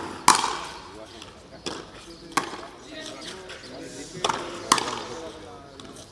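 A frontenis rally: sharp cracks of strung rackets hitting the small rubber ball and of the ball striking the frontón wall. There are about six impacts at uneven spacing, the loudest about a third of a second in, and a quick pair near the end.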